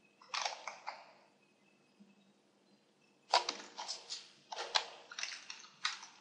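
Computer keyboard keys being typed in short bursts of clicks: a brief run about a third of a second in, then quicker, denser runs from about three seconds in to the end.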